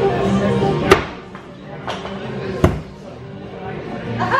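Thrown axes striking wooden target boards: two sharp impacts, about a second in and near three seconds, with a fainter knock between them. Background music plays under the first second.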